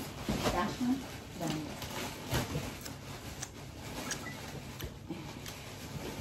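Someone eating a piece of dark chocolate: soft chewing and mouth sounds with a few short hums, and the occasional crinkle of the foil chocolate wrapper.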